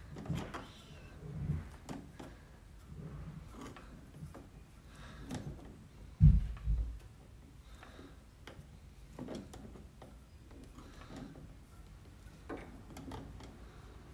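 Small clicks, taps and scrapes of pliers turning a small metal part back onto a Baldwin spinet piano key, with a dull thump about six seconds in.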